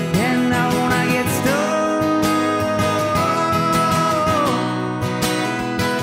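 Live acoustic guitar strummed under a raspy male voice singing; about a second and a half in, the singer holds one long note for about three seconds before it drops away.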